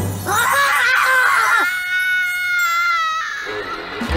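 A cartoon character screaming: a wavering cry for about a second, then one long, high held scream that cuts off about three seconds in.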